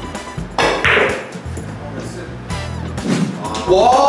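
Background music, with the tap of a billiard cue on the cue ball and the sharp clicks of carom balls striking each other about half a second in.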